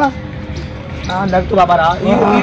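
Quieter for about the first second, then a voice calling out in short wavering sounds without clear words, over background music.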